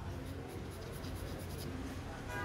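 Graphite pencil shading on drawing paper: a run of short, quick strokes scratching across the paper.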